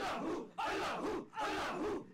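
Many voices chanting a short phrase together, repeated three times with brief pauses between: a group dhikr chant.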